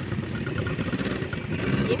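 Small engine of a rented off-road motor vehicle running, a rough, uneven rumble.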